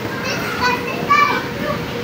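Children's high-pitched calls and chatter while they play, several short shouts over a steady din of other children in the play area.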